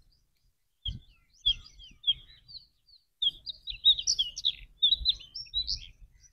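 Small birds chirping in quick runs of short, high notes that grow busier through the second half. Underneath, low dull thumps and rumbles come and go and are the loudest sounds.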